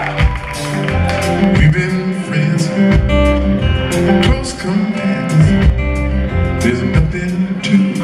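Live band playing an instrumental passage: an amplified acoustic guitar over a bass line of long, deep notes that change about every half second.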